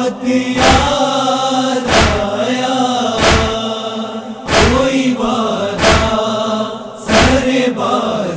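Chorus of voices holding a sustained, wordless chant of a noha lament, gently rising and falling in pitch. A deep thump keeps time about every 1.3 seconds, a matam-style beat.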